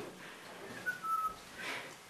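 A brief, faint high-pitched whistle-like tone, slightly falling in pitch, in an otherwise quiet room.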